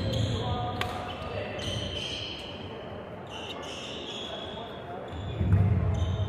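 Badminton shoes squeaking and footsteps thudding on a wooden indoor court between rallies, with a few sharp taps and faint voices echoing in the hall. The loudest parts are low thuds near the start and again about five seconds in.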